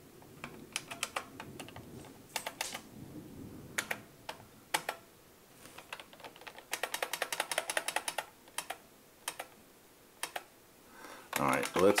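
Computer keyboard being typed on: scattered single keystrokes at first, then a fast run of keystrokes, about eight a second, lasting nearly two seconds, followed by a few last taps.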